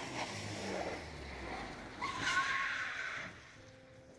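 A car approaching, then a tyre screech about two seconds in that cuts off abruptly a second later.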